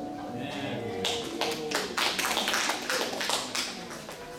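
An acoustic guitar's last strummed chord dies away, followed by a scatter of irregular taps and knocks with some voices.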